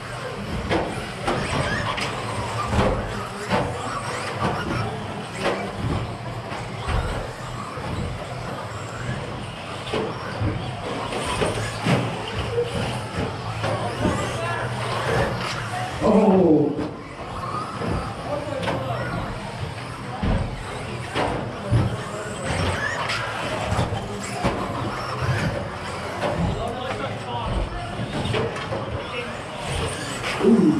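Several 1/10-scale electric stadium trucks with 13.5-turn brushless motors racing on an indoor carpet track. A busy, continuous mix of motor whine and tyre noise runs throughout, broken by frequent short clicks and knocks from landings and hits.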